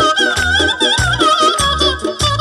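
Live Azerbaijani wedding folk music: a high, wavering melody line, played by a man with his hands cupped to his mouth over a microphone, over a pulsing bass accompaniment.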